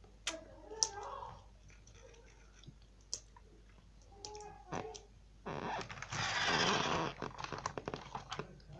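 Handling noise close to the microphone: a plastic toy motorbike rubbing and scraping against it for about two seconds in the second half. Before that come a few small clicks and faint murmured voices.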